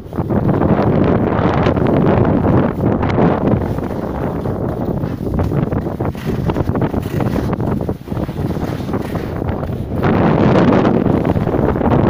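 Wind rushing over the microphone of a handheld phone as the skier glides down a piste, mixed with the scraping hiss of skis on snow. It swells loudest in the first couple of seconds and again near the end, with a short lull in between.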